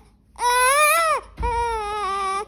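Newborn baby crying in two wails: the first rises and falls, and the second, about a second and a half in, is lower and steadier.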